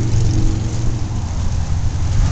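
A vehicle engine idling with a steady low rumble.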